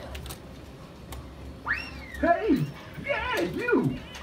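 A toddler's high squeal about two seconds in, followed by whiny babbling that swoops up and down in pitch.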